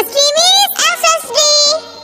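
A high-pitched, child-like voice singing a nursery-song line in a few drawn-out syllables, its pitch rising and falling, stopping near the end.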